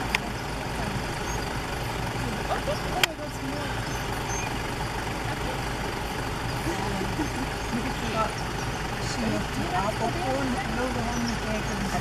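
Safari vehicle's engine idling steadily, a low hum, with a sharp click about three seconds in.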